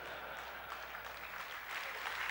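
Audience applauding, growing a little louder near the end.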